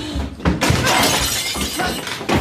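Glass smashing: a loud crash about half a second in, followed by continuous shattering and clattering of breaking glass.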